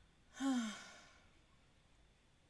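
A woman sighs once, a short breathy sigh that falls in pitch, about half a second in.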